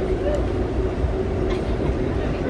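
NYC subway train running, heard from inside the moving car: a steady low rumble with a faint even hum over it.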